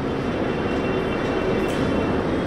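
Steady background noise in a pause between spoken phrases, an even hiss and hum with a few faint steady tones running through it.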